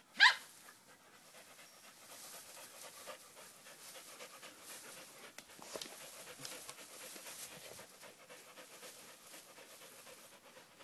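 Dogs at play: a short, sharp high-pitched yelp right at the start, then steady dog panting with crackly rustling of leaves as a small dog pushes through the bushes.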